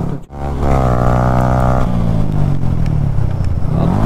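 Yamaha R15 sport bike's single-cylinder engine running on the move. The sound drops out briefly just after the start, then the engine note rises a little and holds steady for about a second and a half before blending into a noisier mix of engine and road.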